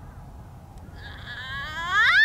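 Voices rising in a drawn-out, climbing cry from about a second in, growing louder, as onlookers react to a putted golf ball rolling toward the hole, over a low steady rumble.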